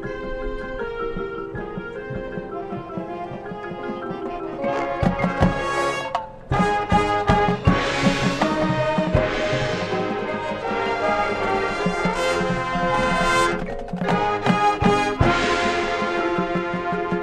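High school marching band playing: brass chords over drums and front-ensemble percussion. Softer sustained chords open, then from about five seconds in the band plays louder, with repeated drum hits and several bright crashes.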